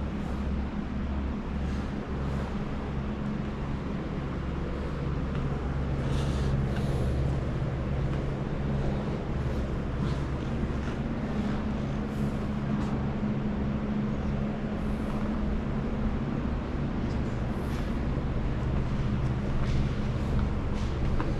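Steady low machinery hum, a few steady droning tones over a low rumble, with a few faint knocks scattered through it.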